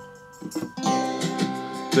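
Music with plucked acoustic guitar played through a JBL Clip+ Bluetooth speaker, streamed from a phone: the reassembled speaker still works. The music is softer for the first half-second or so, then guitar notes come in.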